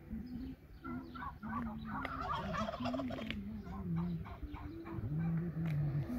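A string of short bird calls, thickest about two to three seconds in.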